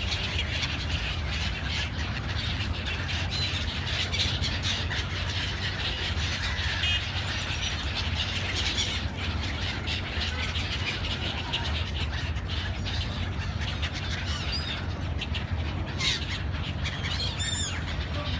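A flock of gulls squawking and calling as they fly over and around the water, with a couple of sharper calls near the end, over a steady low rumble.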